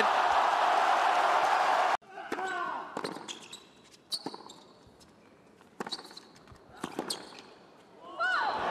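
Crowd cheering after a tennis point, cut off abruptly about two seconds in. Then, over a quiet stadium, come a few sharp knocks of a tennis ball being bounced and struck by rackets as the next point is played.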